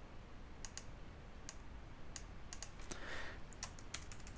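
Faint, irregular clicks from a computer mouse and keyboard, a dozen or so short ticks spread unevenly, bunching toward the end.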